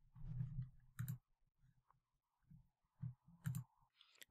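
A handful of faint, separate clicks from working a computer while an entry is picked from an autocomplete dropdown list.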